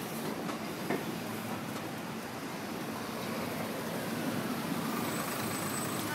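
Street traffic, with a double-decker bus driving past, a steady rumble that swells a little in the second half. A brief sharp click about a second in.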